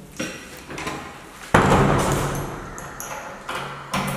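Handling noise from a hand-held camera: a sudden loud knock about a second and a half in, followed by rustling that fades over the next two seconds, with a few lighter clicks before it.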